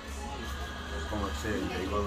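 A man's voice making speech sounds in the second half, over a steady low hum.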